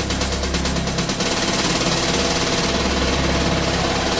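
Late-1990s trance music in a breakdown without the kick drum. A fast stuttering synth pulse stops about a second in, leaving sustained synth pads and noise.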